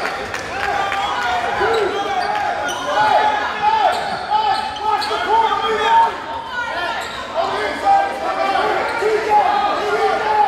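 Basketball game in a school gym: overlapping, indistinct voices of players and spectators echoing in the hall, with a basketball bouncing on the hardwood floor.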